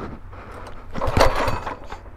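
One hard yank on the recoil pull cord of a Predator 212cc single-cylinder four-stroke engine about a second in, a short rasping pull with the engine turning over but not starting. It is the pull on which the starter cord breaks.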